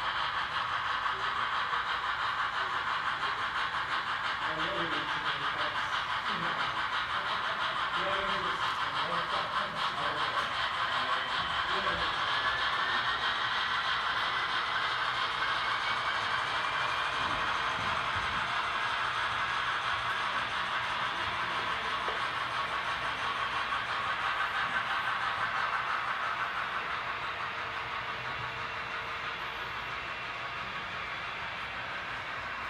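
Model trains rolling along the layout's track: a steady whir of small wheels and motors. Indistinct voices murmur through the first half, and a faint tone rises in pitch partway through.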